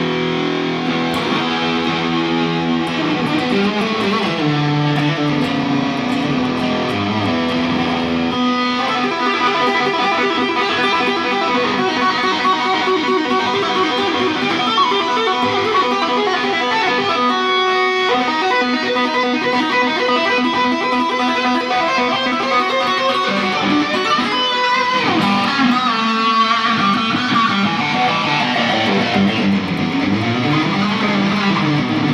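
Solo electric guitar played through a small amplifier. It opens with lower, sustained notes and chords, then about eight seconds in moves into fast runs of single notes higher up the neck that carry on to the end.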